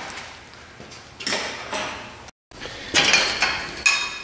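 Steel hand tools and suspension parts clinking and clattering in a few short bursts, with a brief ringing to some of the hits and a moment of dead silence just past the middle.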